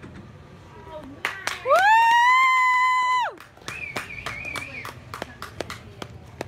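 Spectators clapping, with one loud, high-pitched "woo" cheer that rises and is held for about a second and a half, then a fainter high second call while the clapping goes on.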